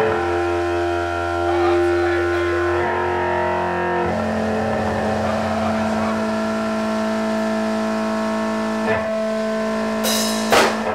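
Distorted electric guitar through an amplifier, holding long, steady droning chords with no drums. The chord changes about three seconds in and again about four seconds in.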